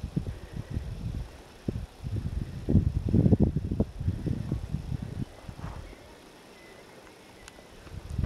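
Wind buffeting the camera microphone in irregular low gusts, dying down about five seconds in.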